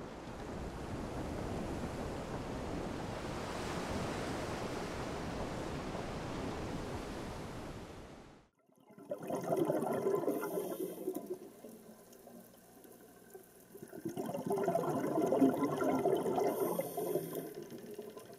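Sea water sounds: a steady wash that fades out after about eight seconds, then, after a brief silence, a muffled surging water sound that swells twice.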